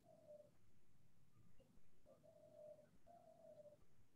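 Near silence over an online call, with three faint, short, steady tones: one at the start and two close together in the second half.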